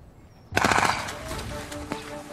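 A sudden burst of rapid automatic gunfire about half a second in, with a dense string of shots in quick succession.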